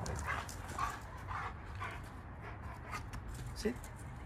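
Large dog growling in short bursts, about two a second, during rough play with a person; the bursts stop about three seconds in.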